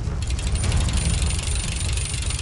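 Cartoon sound effect of a horde of spider-legged toilet monsters scuttling: a dense, rapid mechanical clicking clatter that starts just after the beginning, over a steady low rumble.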